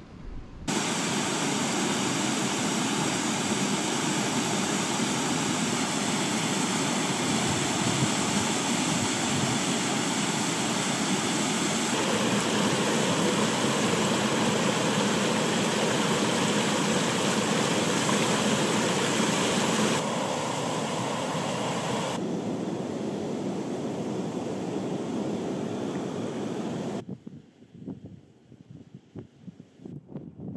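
Small mountain stream cascading over rocks, a loud steady rush of water whose tone changes abruptly several times as the shots change. About three seconds before the end it gives way to a quieter, gusty sound of wind on the water.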